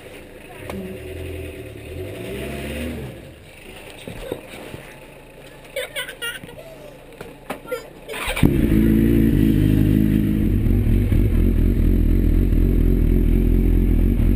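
Suzuki GSX-R1000 inline-four starts up suddenly about eight seconds in and runs at a steady idle. Before that there are only quiet handling clicks and rustles.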